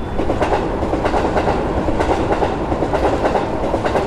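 Ride noise of a moving vehicle: a steady rumble with dense rattling and clatter, fading in and then fading out after about four seconds.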